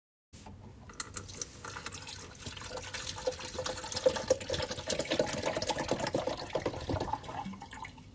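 Water running and splashing, growing louder through the middle and easing off near the end.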